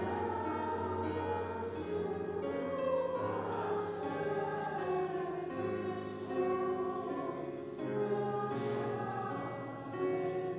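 A church congregation singing a hymn together, in slow, held notes.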